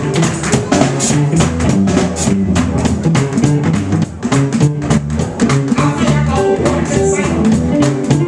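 A drum kit played fast in a live gospel band, with rapid drum and cymbal strikes over a bass line that steps from note to note.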